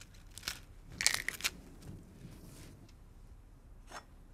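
Raw cauliflower being snapped into small florets by hand: a few short crunching snaps, most of them in the first second and a half.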